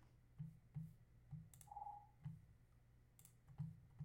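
Faint, scattered clicks of a computer mouse and keyboard, about seven in all, each with a soft low bump.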